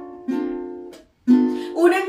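Ukulele strumming chords between sung lines: a chord rings and fades, the playing stops briefly about a second in, then resumes with louder strums.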